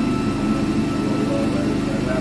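A motor running steadily with a continuous low droning hum and a fine, even flutter.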